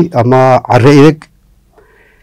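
A man reading aloud in a drawn-out, sing-song voice for just over a second, then a pause.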